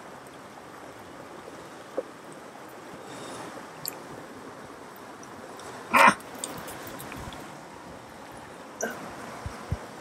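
South Fork of the Kern River running steadily over rocks close by, with a few small clicks and one short, loud sound about six seconds in.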